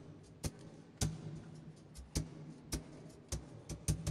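Footsteps on a hard floor in a large stone church: a sharp, echoing click about every half second, over a faint low hum.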